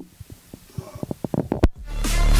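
A run of short, low thumps, sparse at first and then coming faster and faster like a drum build-up, ending in a sharper hit and a brief gap just before electronic music swells in at the very end.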